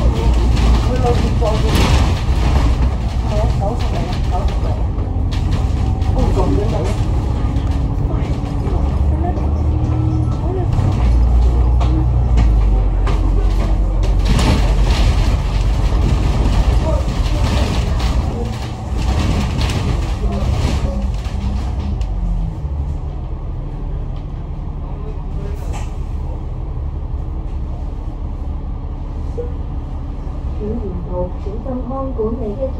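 Alexander Dennis Enviro500 MMC double-decker bus heard from inside while on the move: engine running with the body rattling over the road. The engine sound eases and the overall level drops about two-thirds of the way through.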